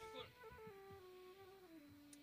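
Soprano saxophone played softly: a short melody of held notes stepping downward, ending on a longer low note.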